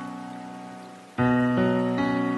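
Slow solo piano music: a chord dies away, then a new chord is struck about a second in, with another note soon after.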